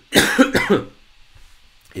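A man coughs, one loud rough burst lasting under a second, shortly after the start.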